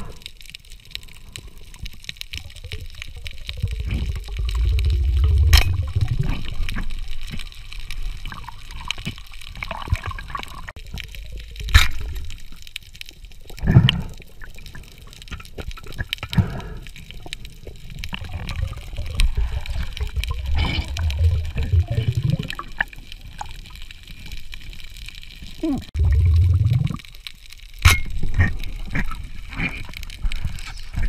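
Underwater sound of a scuba diver breathing through a regulator: deep bubbling rumbles of exhaled air come in surges every several seconds, with a few sharp clicks in between.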